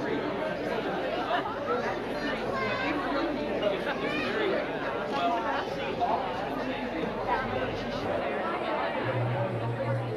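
Many guests talking at once: a steady hubbub of overlapping conversation with no single voice standing out.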